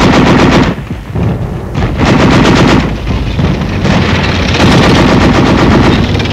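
Machine gun firing in bursts of rapid, evenly spaced shots: a short burst at the start, another about two seconds in, and a longer one from about four seconds in.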